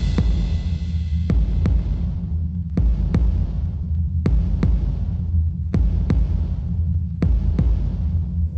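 Film soundtrack: a low steady drone with a heartbeat-like pulse, a pair of thuds about every second and a half.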